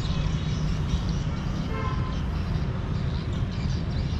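Steady low rumble of outdoor town ambience, with a brief faint horn-like toot about two seconds in.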